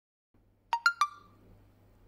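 A quick three-note electronic chime: three short ringing notes in quick succession, the second highest, about three-quarters of a second in, followed by a faint low hum.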